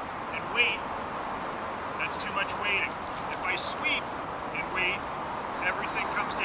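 A bird's short, high chirping calls, coming in small groups about once a second over a steady background hiss.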